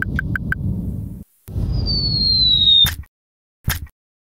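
Sound effects of an animated logo sting: a low rushing swell with a quick run of short high chirps, a brief break, then a second swell under a whistle that slides downward and ends in a sharp snap, followed by a short hit near the end.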